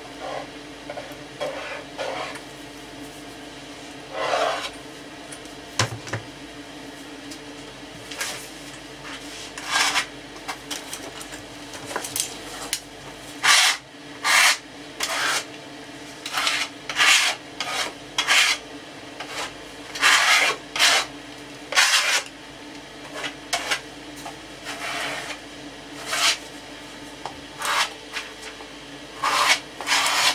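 Short rasping, rubbing strokes of hand work on a loudspeaker cabinet's veneer panel, repeated irregularly. They come sparsely at first, then louder and more often from about eight seconds in.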